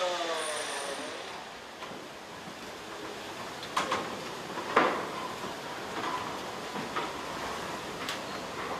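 Background hiss of a busy indoor film set, opening with a short falling call from a voice, then several sharp knocks, the loudest about five seconds in.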